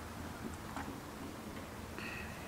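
Quiet background: a low steady hum with a couple of faint, short clicks about half a second and just under a second in.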